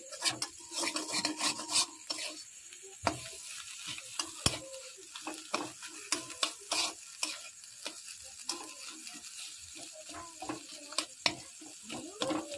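Metal spoon stirring and scraping a spiced mixture around a metal kadai over a gas flame, with irregular clinks and scrapes against the pan over a light sizzle.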